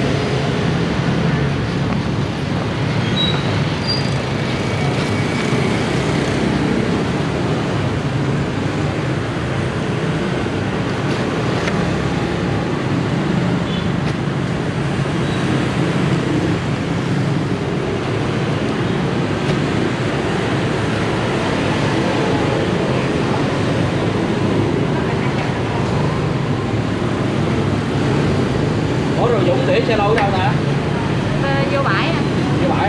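Steady road traffic noise, with indistinct voices in the background.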